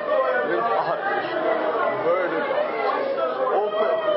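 Voices talking: several people speaking at once in a room.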